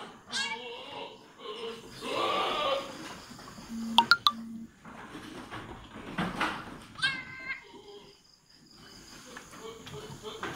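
A goat in difficult labour (dystocia) bleating several times while a kid is being pulled from her. The longest call comes about two seconds in, and two or three sharp clicks come about four seconds in.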